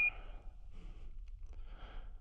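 An astronaut breathing inside a spacesuit helmet, two soft breaths about a second apart. At the very start the tail of a high radio beep ends the transmission.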